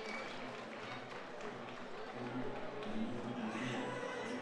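Audience clapping and murmuring, with indistinct voices close by.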